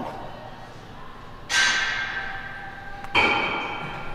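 Two metallic clanks of dumbbells, about a second and a half apart, each ringing briefly as it dies away.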